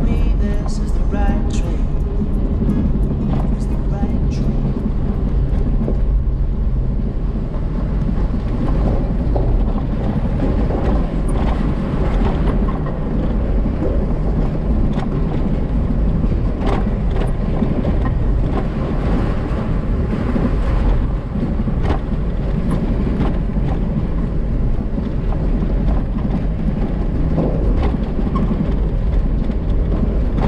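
Jeep driving on a gravel trail: steady engine and tyre rumble, with a run of sharp clicks in the first few seconds and a few more later.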